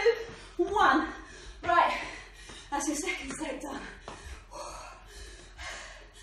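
A woman's breathless vocal sounds during hard exercise: gasps and voiced exhalations about once a second, with short wordless vocalising, the sign of her being out of breath from the interval work.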